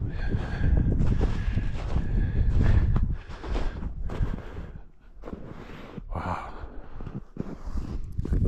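Footsteps crunching in snow, with wind buffeting the microphone, heaviest over the first three seconds.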